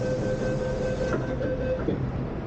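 MTR train door-closing warning: a rapid two-pitch electronic beeping over the carriage's steady hum, with a knock about a second in as the doors shut, the beeping stopping just before the end.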